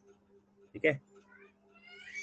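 A cat meowing twice, fainter than the nearby voice: a short rising call, then a longer one that rises and falls.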